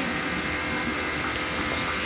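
Electric stand fan running: a steady whooshing hiss with a faint steady hum.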